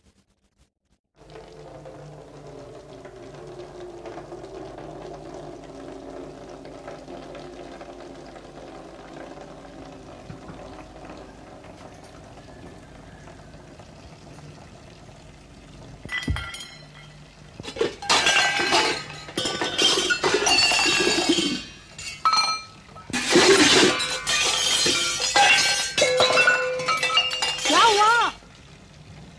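Soft background music at first. About halfway through come loud bursts of dishes and utensils clattering and crashing together, stopping and starting: dishes being banged about roughly as they are washed.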